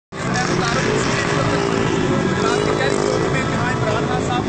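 Busy street traffic, with motorcycle and auto-rickshaw engines running steadily and a mix of voices in the background.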